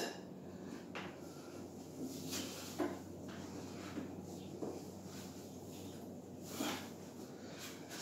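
Faint rustling of a cotton t-shirt being pulled on while the body is held in a plank, with a few soft knocks and shuffles scattered through, the ones about three seconds in and near the end a little louder.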